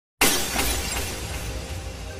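Glass-shattering sound effect: a sudden loud crash just after a moment of silence, dying away slowly over a low rumble.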